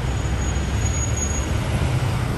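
Steady low rumble of road and engine noise from a car driving in freeway traffic, heard from inside the car.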